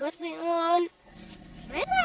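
A young girl's speech played backwards, followed from about a second in by a low rumble with another voice gliding up and down over it.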